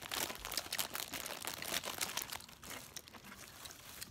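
A candy wrapper crinkling as it is unwrapped by hand: a quick run of small crackles that thins out about halfway through.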